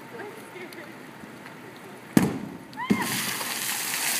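A liquid nitrogen bottle bomb goes off in a water-filled trash can. There is a single sharp bang about halfway through, and about a second later a loud spray and splash of water and fog bursting out and falling back.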